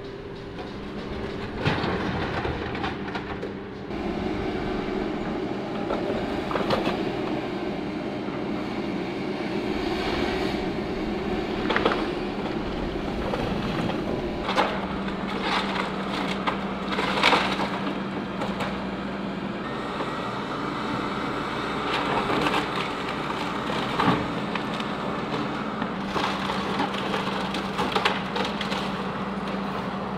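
John Deere 160G excavator running steadily under load as it tears into a cinder-block building, with repeated crashes and crunches of falling block, timber and sheet metal every few seconds.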